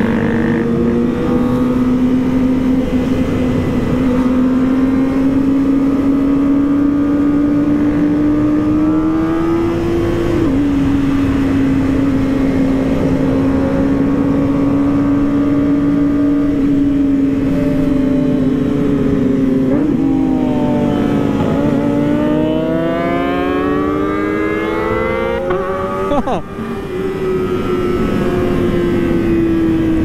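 Kawasaki ZX-25R's 250 cc inline-four running at high revs under way, heard from the rider's seat with wind rumble on the microphone. The engine pitch drops abruptly, as at a gear change, about ten seconds in. Around twenty seconds in it revs up steadily for several seconds before dropping sharply again, another shift.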